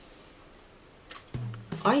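A single short spritz from a pump spray bottle of water about a second in, sent off to the side instead of onto the makeup brush, followed by a startled woman's "¡Ay!" near the end.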